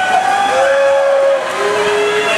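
Swim-meet teammates and spectators cheering the swimmers with long held shouts, one about a second long and then a lower one near the end, over the noise of a crowd and splashing water.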